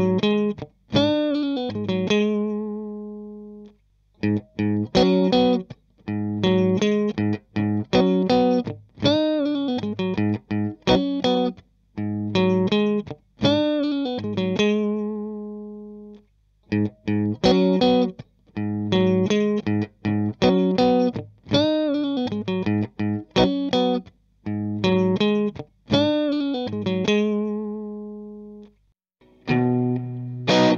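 Clean electric guitar through an amp: a phrase of picked chords and single notes that ring out and decay, heard twice. First comes the take played from the control room through a buffer pedal over a long wall cable, then, about halfway, the same part recorded in the live room straight into the amp.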